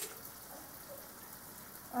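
Sliced onions frying in oil in a pan: a steady, fine crackling hiss.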